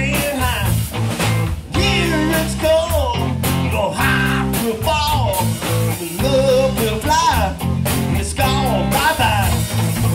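Live rock band playing: an electric guitar lead line with bent, wavering notes over bass guitar and drums.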